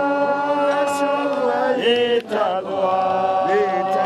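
Mourners singing a slow, unaccompanied song in long held notes.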